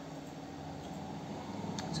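Room tone in a small room: a steady, faint hiss with a low hum, like an air conditioner or fan running. A man's voice starts again at the very end.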